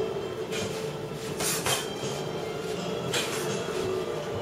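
Boxing-glove sparring: about four scattered sharp hits and scuffs from the fighters' punches and footwork, over a steady hum.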